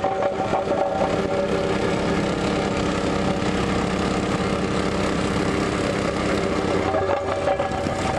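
Gas-engined vibratory plate compactor running steadily as it compacts a fresh hot asphalt patch: a steady engine drone over a fast vibrating rattle.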